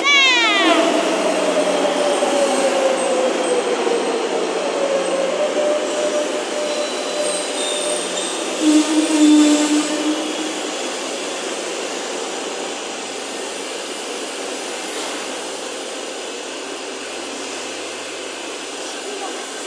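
Electric metro train running alongside the platform and slowing: its motor whine falls steadily in pitch over the first few seconds while the running noise slowly fades. A brief falling squeal comes at the very start, and a short louder hum about nine seconds in.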